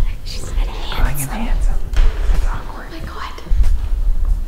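Whispering and quiet talk over background music, with a low rumble underneath.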